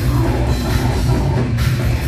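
Death metal band playing live: heavily distorted guitars and bass over dense, fast drumming, loud and continuous.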